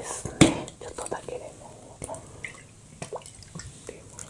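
Plastic bottle of Pokka Lemon 100 lemon juice being handled and opened, with a sharp click about half a second in, then small clicks and drips as the juice is shaken out over the fried food.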